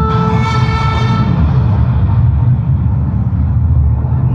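A sustained wind-instrument note with a rich set of overtones dies away within the first second. It leaves a loud, steady low rumbling noise.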